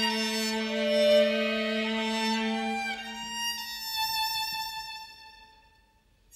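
String quartet playing slow, sustained bowed chords. The lower voices drop out about three to four seconds in, leaving high held violin notes that fade away to near silence at the end.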